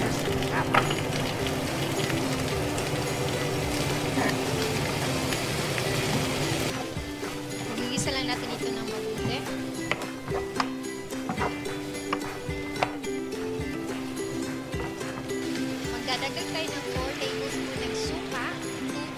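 Background music over the sizzle of peppers, carrots and garlic sautéing in hot oil in a frying pan. The sizzle is strongest in the first six or seven seconds, and later a wooden spatula clicks and scrapes against the pan as it stirs.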